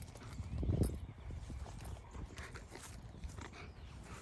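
Footsteps of a dog and its handler moving across grass: soft, irregular thumps, with one louder thump just before a second in.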